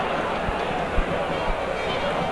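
Steady stadium crowd noise from a football ground, heard as an even hiss, with soft low thumps about every half second.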